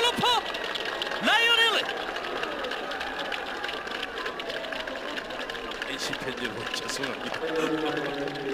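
Baseball TV broadcast sound of a ballpark: two short voice calls in the first two seconds, then steady background stadium noise.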